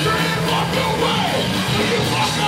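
Hardcore punk band playing live: distorted electric guitar, bass and drums, with the vocalist yelling into the microphone.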